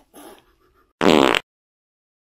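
A short, loud, buzzy comedy sound effect edited in about a second in, a single blast with a wavering pitch that cuts off sharply.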